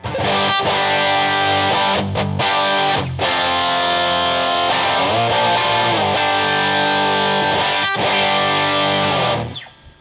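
Distorted electric guitar in drop D tuning playing a movable drop D chord shape: low three strings fretted, G string muted, B and high E barred. Each chord is struck and left to ring, then shifted to other frets with brief gaps between. The chords are muted and die away near the end.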